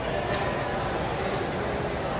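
Steady background hubbub of a bar room: indistinct voices over a constant low rumble, with two faint clicks about a second apart.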